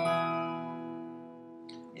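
A single strummed chord on an acoustic guitar, struck once and left to ring, fading away over about two seconds. It is the E minor chord, the relative minor (six chord) in the key of G.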